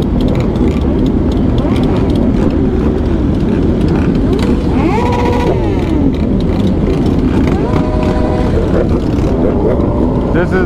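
Many sport-bike motorcycle engines running together in a large group, with individual bikes revving up and down, most clearly about five seconds in and again around eight seconds.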